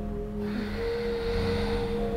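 Soft ambient background music of sustained, bell-like held tones, with a long, soft breath over it from about half a second in, taken while the yoga pose is held.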